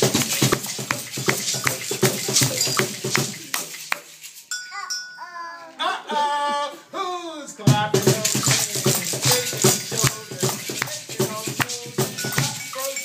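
Children shaking toy maracas and hand rattles along to music. The music and rattling stop suddenly about four seconds in, a voice calls out with sliding pitch for a few seconds, and then the music and shaking start again.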